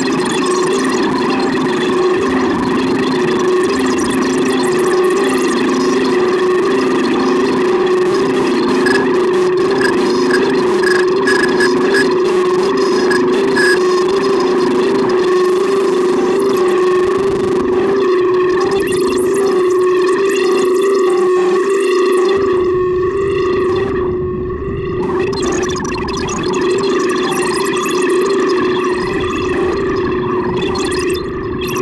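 Make Noise Tape and Microsound Machine and Strega modular synthesizer running a self-playing feedback patch. It holds a steady drone with a lower note pulsing about every second and a half, under shifting upper textures that are reshaped as knobs are turned. A low rumble enters about two-thirds of the way through.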